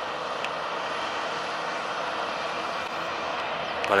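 Loaded Scania semi-truck's diesel engine running steadily under load as it climbs a long highway grade, heard at a distance as an even drone.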